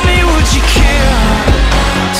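Loud instrumental stretch of a song, with a heavy bass line and no vocals.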